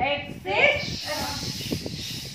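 Women's voices in a phonics chant: a short rising vocal call, then from about a second in a sustained hissing 'sss'-like letter sound made by the group.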